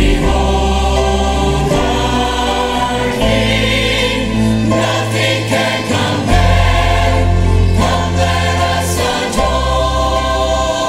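Church choir singing together with two soloists, a man and a woman, over instrumental accompaniment with long held bass notes that change every second or two.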